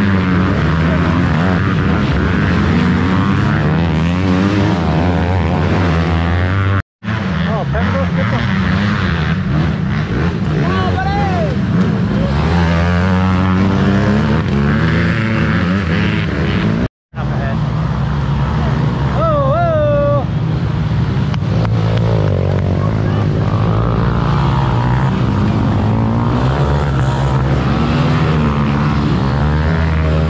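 Several race quads (sport ATVs) running hard past on a dirt trail, their engines revving up and down as they go by. The sound cuts out abruptly twice, about a third and about halfway through.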